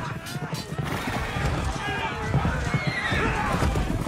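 Cavalry horses whinnying and hooves galloping in a film's battle soundtrack, mixed with men's shouts and music score.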